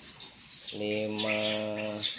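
Speech only: one voice holding a single drawn-out word, the number fifty, for about a second.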